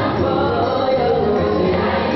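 A choir singing gospel music.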